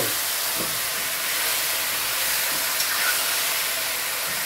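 Curry-seasoned iguana meat frying in hot oil and browned sugar in a pot: a steady sizzle as it is stirred.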